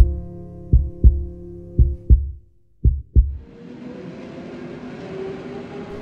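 A heartbeat sound effect: four double 'lub-dub' thumps, about one a second, over a fading sustained piano chord. After the last beat, a steady hiss of background ambience takes over.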